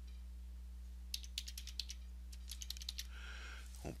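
Computer keyboard typing: a short run of keystrokes, as "test 123" is typed into a text document, starting about a second in and stopping near three seconds. A steady low hum lies underneath.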